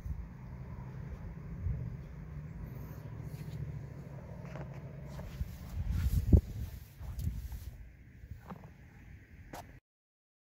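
Low steady rumble with camera-handling bumps and rustling, a sharper knock about six seconds in; the sound cuts off just before the end.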